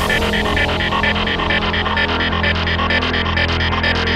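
Electro house music: a held low bass drone under a fast, even, pulsing synth pattern.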